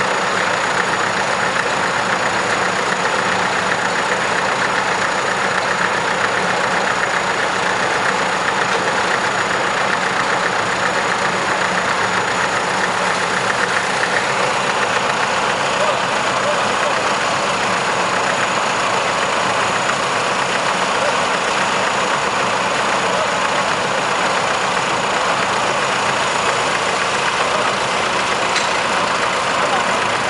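Diesel engines of a Caterpillar backhoe loader and a concrete mixer truck idling together, a steady, even running with no change in speed.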